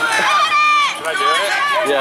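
Voices of riders on a passing pedal pub shouting and calling out in short, high-pitched cries.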